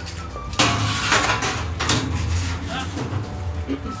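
Metal grill grate being slid and set down on a gas barbecue: a loud metallic scrape and clatter about half a second in, then further scrapes around one and two seconds, over a steady low rumble.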